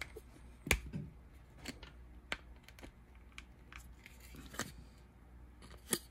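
Hard PVC figure parts clicking and knocking as a separate wing is worked into its socket on a small PVC dragon statue by hand: scattered small clicks, with louder knocks about a second in and near the end. The wing is a tight fit and does not seat.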